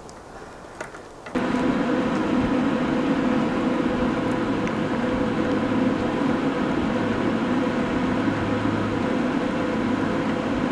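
A few faint clicks, then an electric inline duct fan switches on about a second in and runs steadily, a rush of air with a hum, blowing on a small turbine rotor.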